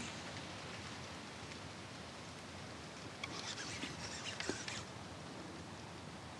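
Quiet ambience on a calm river: a faint, steady hiss with a few soft ticks and patters about three to five seconds in.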